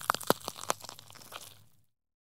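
Crackling, crunchy transition sound effect: a rapid irregular run of sharp clicks and crackles, loudest in the first second, dying away and cutting off to dead silence shortly before the end.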